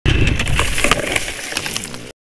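Husqvarna FC350 four-stroke single-cylinder dirt bike pushing off the trail into dry brush, with twigs and branches crackling and snapping against the bike. The engine rumble is loudest at first and fades as the crackling goes on.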